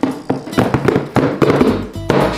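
Background music with a quick percussive beat and plucked strings.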